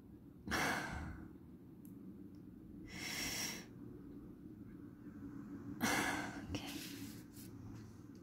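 A woman taking slow, deliberate breaths close to the microphone: three breaths about two and a half seconds apart, each a soft rushing hiss. They are breathed as part of a meditative prayer practice directed at the third eye.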